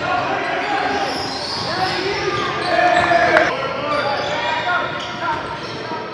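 Basketball game sounds in a gym: a basketball bouncing on the court amid players' voices calling out, echoing in the large hall, with a few sharp knocks near the middle.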